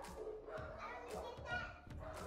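A young child's voice talking indistinctly.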